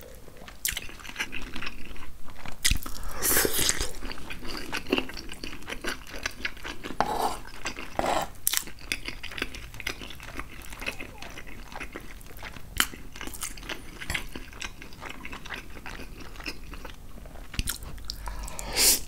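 Close-miked chewing of chicken piccata and angel hair pasta, with sharp clicks now and then from a metal fork on a wooden board.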